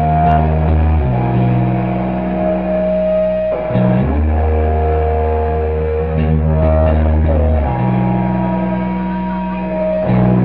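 Live rock band playing, led by electric guitar, holding long sustained chords over low bass notes. The chord changes every few seconds, and there is no singing.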